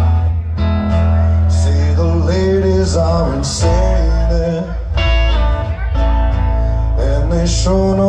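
Live amplified rock band playing: electric and acoustic guitars over bass guitar and drums, with guitar lines bending in pitch.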